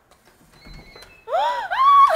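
A door lock being worked by hand, with faint clicks and a faint steady electronic tone. Then, just over a second in, a loud pitched sound sets in that swoops up and down several times.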